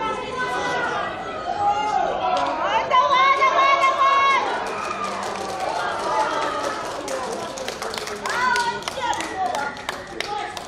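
Voices shouting and calling out on a rugby field, with a long held shout about three seconds in and another shout near the end. Sharp claps or clicks come thickly in the second half.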